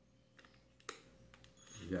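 A few sharp plastic clicks from a cordless impact drill/driver being handled, the loudest about a second in. A man's voice starts near the end.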